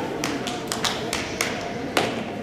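Irregular sharp hand slaps, about eight to ten in two seconds, over voices in a large hall.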